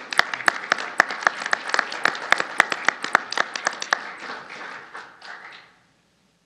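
Audience applauding, with individual hand claps standing out sharply, thinning after about four seconds and dying away just before the end.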